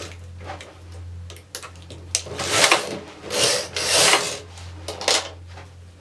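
Knitting machine carriage pushed across the needle bed and back to knit two rows: a few light clicks first, then a rushing, sliding noise in several swells through the second half.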